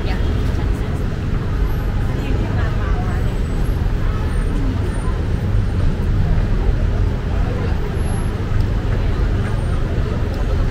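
Busy street ambience: a steady low rumble of road traffic, with faint voices of people nearby.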